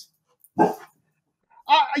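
A dog barks once in the background, a single short bark about half a second in.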